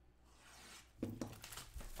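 Plastic shrink-wrap being torn off a sealed trading-card box and crumpled in the hand: a faint tearing hiss in the first second, then louder irregular crinkling from about one second in.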